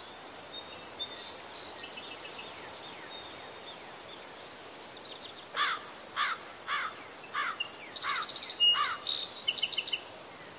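Outdoor summer ambience with a steady high insect drone. From about halfway a bird sings a run of about six sweeping whistled notes, then fast twittering trills near the end.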